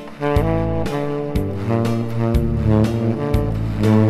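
Tenor saxophone playing a slow trot melody over a backing track, with bass notes and a beat falling about once a second.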